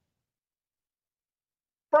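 Silence: a dead gap between spoken sentences, with a man's voice starting right at the end.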